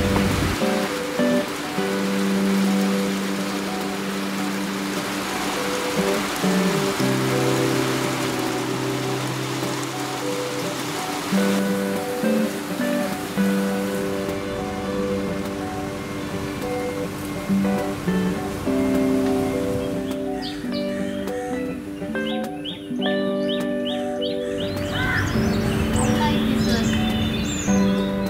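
Instrumental background music of held, slowly changing notes over a steady hiss. Near the end there is a run of short, high chirps.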